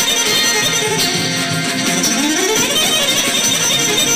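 Live Balkan kuchek (čoček) band music: an electronic keyboard and an electric guitar playing together, steady and loud, with a rising glide in pitch a little past two seconds in.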